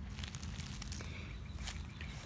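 Footsteps on dry leaf litter, with a few faint crackles.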